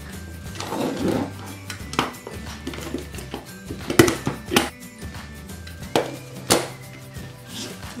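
Background music with steady low notes, over which come several sharp clicks and knocks, about five in all, as a burlap-wrapped wooden canvas frame is handled on a wooden table.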